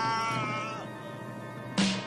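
A man's long, high, drawn-out cry slowly falling in pitch and fading away within the first second. Near the end comes a single sharp stroke on a rope-tensioned field drum, struck with wooden sticks.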